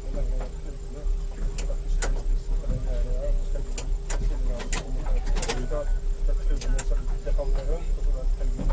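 Cockpit ambience: a steady low rumble with a constant hum, several sharp clicks and knocks scattered through, and faint voices in the background.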